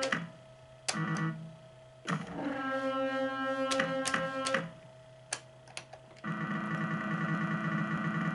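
Pachislot machine's synthesized music and effect tones playing in short segments that stop and restart, with a louder passage near the end. Several sharp clicks from the start lever and reel-stop buttons break in during play.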